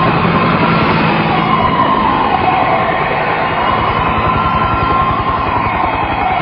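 A wailing, siren-like tone over a steady, dense rumble of vehicle noise; the tone slides down in pitch about two seconds in and again near the end.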